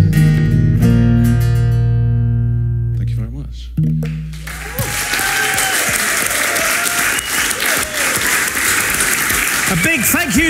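Acoustic guitar and electric bass let the song's final chord ring, striking it again about a second in and near the four-second mark before it dies away. About five seconds in the audience breaks into applause, with some voices cheering.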